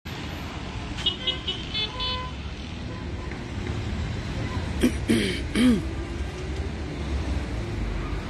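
Street traffic rumbling steadily, with a few short horn beeps between about one and two seconds in and a brief call from a voice, rising and falling in pitch, around five seconds in.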